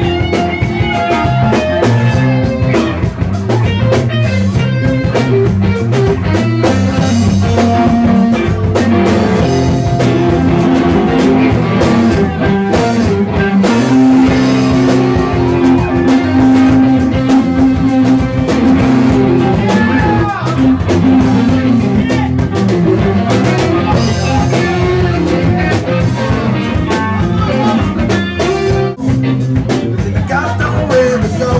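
Live rock band playing an instrumental passage: electric guitar with long held notes over bass and a drum kit keeping a steady beat, without vocals.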